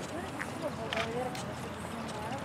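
Faint, distant voices of people talking over steady outdoor background noise, with two short sharp clicks about a second in.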